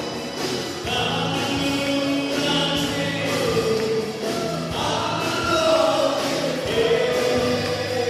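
Several voices singing a Mizo song together into microphones, backed by a live band.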